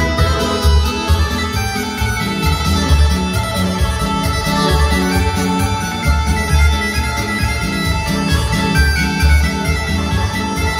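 Live folk band playing a lively instrumental kolo dance tune, a sustained melody over a steady pulsing beat.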